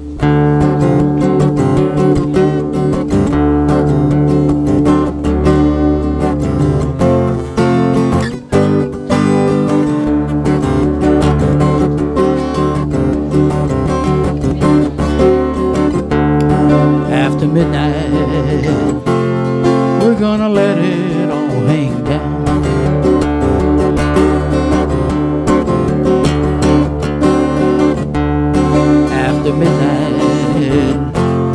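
Acoustic guitar strummed steadily, playing chords in a regular rhythm as an instrumental opening.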